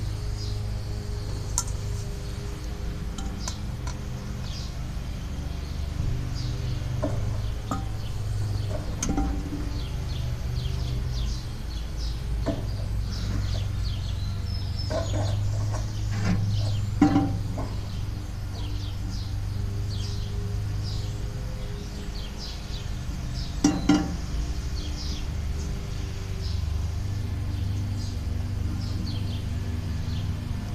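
Hand-held gas torch burning steadily with a low rumble as its flame is played into a coke forge's fire pot to light the wood and coke. A few sharp clinks and knocks come through, the loudest about halfway through and about three-quarters of the way through.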